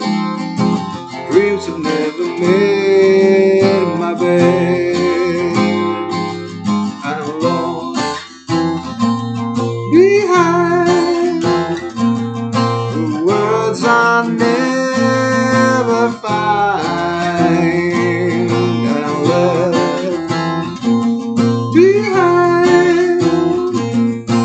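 Acoustic guitar strummed steadily, with a man singing over it and holding long notes at times.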